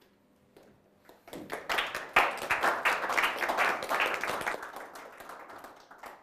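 Audience applauding, starting about a second in, swelling quickly and dying away near the end.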